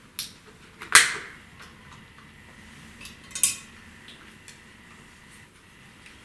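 Clicks and clacks of small hard plastic and metal parts being handled during the disassembly of a portable DCC cassette player: a sharp click just after the start, the loudest clack about a second in, another about three and a half seconds in, and lighter ticks between.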